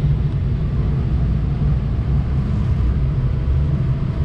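2007 Ford F-350's 6.0-litre Power Stroke turbo-diesel V8 idling, heard from inside the cab as a steady, even low rumble.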